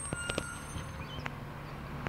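A side-loading garbage truck's engine runs steadily while its automated arm lifts a bin, with a few sharp knocks in the first half second.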